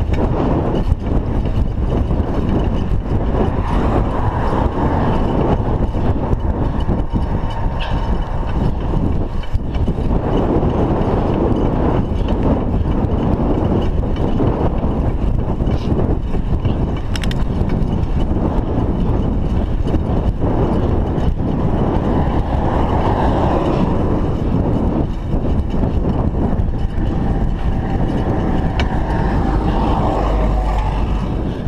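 Steady wind rushing over the microphone of a GoPro on a moving bicycle, mixed with tyre and road noise. A motor vehicle's engine rises in behind near the end as it overtakes.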